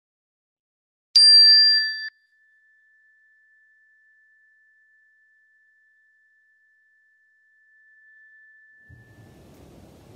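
A small bell or chime struck once. Its bright upper overtones fade within about a second, while one clear tone rings on for about eight seconds, marking the close of a period of silent meditation. Faint room noise rises near the end.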